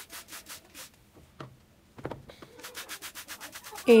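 Cloth pad fabric being rubbed by hand in quick, even scratchy strokes, about seven a second. The strokes pause for a second or so in the middle, with a couple of clicks, then start again.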